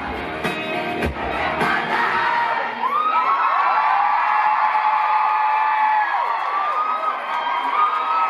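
A rock band's final bars with a few drum hits, stopping about two seconds in, then a concert crowd cheering with long, high-pitched screams.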